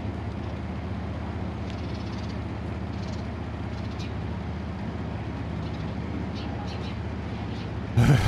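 Vehicle engine idling steadily close by, a low even hum, with light outdoor background noise and a few faint ticks.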